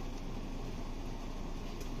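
Steady low background hiss of a room, with one faint click near the end as the ratchet adapter's direction ring is switched.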